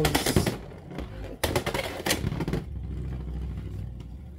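A Beyblade X top, Dran Sword, spinning in a clear plastic Beyblade X stadium. It clatters loudly against the plastic about a second and a half in, then settles into a steady low hum.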